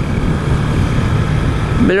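Motorcycle riding at a steady cruise: the engine runs evenly under a steady rush of wind on the microphone.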